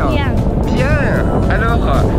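Steady rumble of airflow buffeting the microphone during a tandem paragliding flight, with a voice speaking briefly over it.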